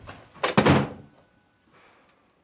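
A door closing with a thud about half a second in.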